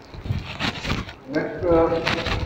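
Indistinct human voice with scattered noises, ending in a drawn-out, held vocal sound near the end.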